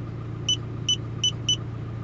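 Handheld C110+ OBD2 scan tool giving four short, high beeps as its arrow key is pressed to scroll down a menu. A steady low hum of the car runs underneath.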